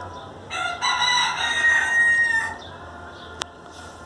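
Rooster crowing once, a single loud call of about two seconds beginning half a second in.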